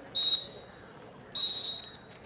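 Two short blasts on a whistle, the second a little longer, each a steady shrill tone.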